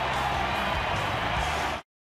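Ballpark crowd noise with stadium music playing, which cuts off abruptly near the end.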